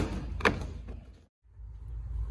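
Two sharp knocks about half a second apart as a 4-inch sewer-and-drain pipe is pushed and wiggled by hand through a rubber gasket in the tank wall, with a little rubbing after them; the sound cuts off a little after a second in.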